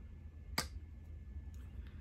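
A single sharp click about half a second in, the cap of a gold lipstick tube being pulled off.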